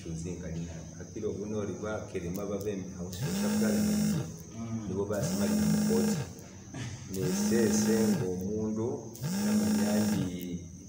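A man talking, over a low humming tone that swells and fades for about a second at a time, coming back about every two seconds from roughly three seconds in.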